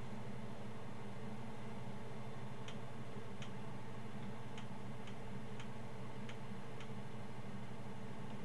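Steady low electrical hum, with a series of about eight light, irregular ticks through the middle. No notes are played.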